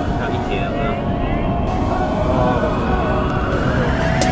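Background music with pitched synth or vocal lines that slide up and down, over a steady low rumble. Near the end a rising sweep builds up.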